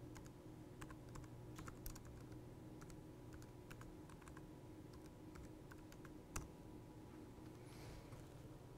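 Faint, scattered computer keyboard keystrokes and clicks as a code example is run, over a low steady room hum, with one sharper click about six seconds in.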